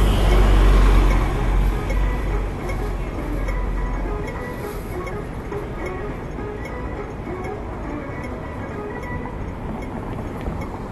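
Double-decker bus passing close by, its low engine rumble loudest about a second in and fading away over the next few seconds, then steady street traffic noise.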